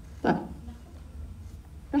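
A woman's voice says one short word, then pauses over a low steady hum before starting the next word near the end.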